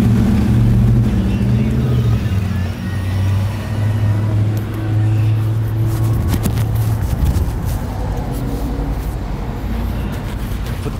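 A motor vehicle's engine running close by, a loud low steady hum that eases off about seven seconds in. A few sharp clicks come near the middle.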